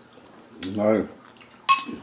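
A single sharp clink of metal cutlery against dishware near the end, ringing briefly.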